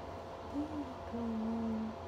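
A person humming two low notes: a short one that rises and falls, then a longer, steadier one held for under a second.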